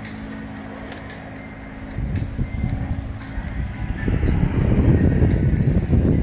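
A steady low hum, then from about two seconds in a loud, irregular low rumble that grows louder toward the end: wind buffeting a handheld phone's microphone outdoors.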